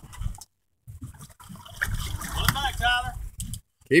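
Water sloshing against the hull of a small fishing boat at sea, a low noisy wash with brief dropouts near the start, with faint voices in the background.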